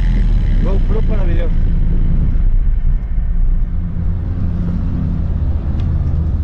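Steady low rumble of wind buffeting a bike-mounted camera's microphone while riding a highway shoulder, mixed with road noise from motor traffic passing close by.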